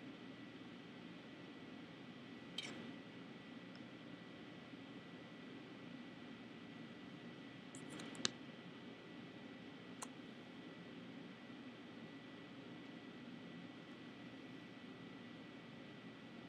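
Quiet room tone with a faint steady high-pitched whine, broken by a few soft clicks: one about three seconds in, a small cluster around eight seconds, and one near ten seconds.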